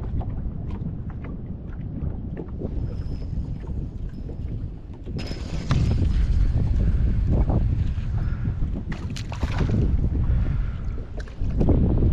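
Wind buffeting the microphone over choppy water, with water lapping at an aluminium boat's hull; the wind gets stronger about five seconds in. A few knocks from gear being handled come near the end.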